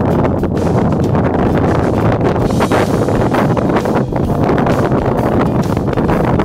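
Wind blowing hard across the microphone, a loud, steady rumbling noise with gusty flares.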